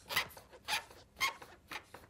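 The hopping desk lamp from the Pixar logo intro: short springy, scraping hops about twice a second, each fainter than the one before.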